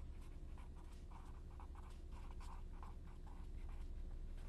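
Felt-tip marker writing on a paper pad: a faint run of short strokes, several a second, as words are written out, over a steady low hum.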